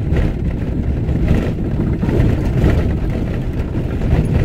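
A vehicle driving along a dirt and gravel road: a steady low rumble of engine and tyres on the rough surface.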